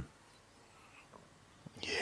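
Near silence: room tone in a pause between two speakers on a call, with a faint brief sound about a second in and the next voice starting near the end.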